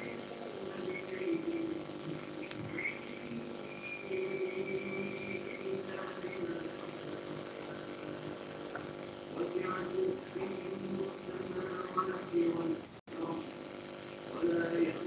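Faint, indistinct voices over a steady high-pitched electrical whine and low hum in the recording, with a brief dropout of all sound about 13 seconds in.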